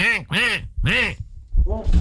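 A man imitating a duck, quacking 'coin-coin' three times with a rise and fall in pitch on each call, then a fainter fourth quack near the end.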